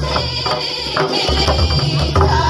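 Jharkhand-style folk dance music: double-headed barrel drums (mandar) beating a steady rhythm, with a wavering melodic voice above them.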